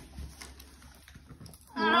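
Quiet room with faint handling sounds, then near the end a person's voice breaks into a long, drawn-out vocal exclamation.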